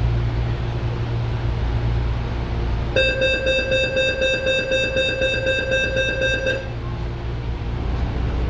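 Door-closing warning tone of a CPTM series 8500 train car: a single steady pitched tone starts about three seconds in, lasts about three and a half seconds and stops abruptly, warning that the doors are about to close. Under it runs the steady low hum of the stopped train.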